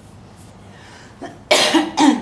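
Coughing: a loud cough about one and a half seconds in, after a quiet stretch.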